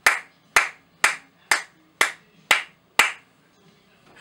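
One person clapping their hands slowly and evenly, about two claps a second, seven claps in all, stopping about three seconds in.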